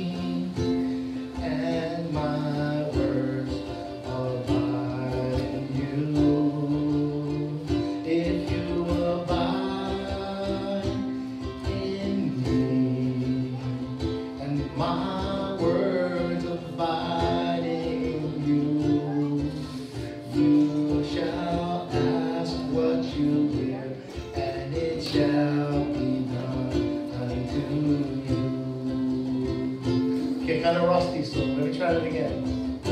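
A man singing a scripture verse set to a simple tune, accompanying himself on a strummed ukulele.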